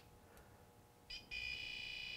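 Built-in non-contact voltage tester of a Hammerhead 4-volt rechargeable screwdriver, held to a live extension cord. About a second in it gives a short beep, then a steady high-pitched buzz: the signal that the cord is hot, with power present.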